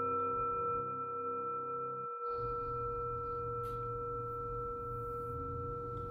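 Singing bowl ringing on after being struck, a sustained tone with several steady overtones, slowly fading. It marks the close of the silent meditation period.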